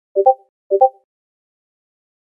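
Discord-style message notification sound played twice in quick succession, each a short two-note pop, signalling new chat messages arriving.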